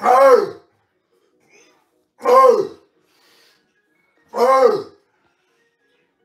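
A man's loud, strained yells, one with each barbell curl: three short shouts about two seconds apart, each rising and then falling in pitch.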